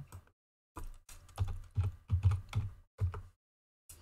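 Computer keyboard being typed on: an irregular run of keystrokes lasting about two and a half seconds.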